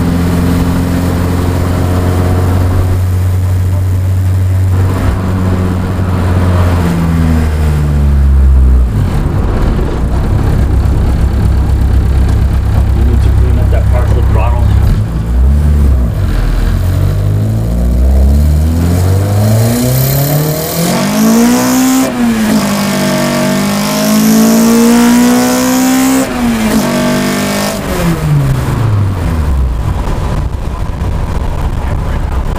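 1992 Honda Accord (CB7) engine fitted with individual throttle bodies, heard from inside the cabin while driving. It runs steadily for the first several seconds, then revs up hard twice in the second half with rising pitch and a loud intake howl, and falls away in pitch near the end as it slows.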